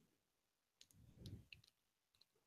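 Near silence, broken about a second in by a few faint clicks and a brief faint low murmur.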